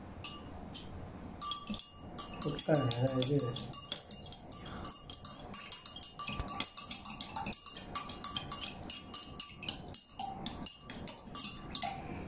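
Metal spoon clinking against a glass tumbler as food colouring is stirred into water. It starts about a second and a half in and keeps up as a quick run of clinks, several a second, until near the end.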